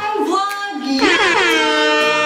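Air horn sound effect: one long blast starting about halfway through, sliding down briefly and then holding steady.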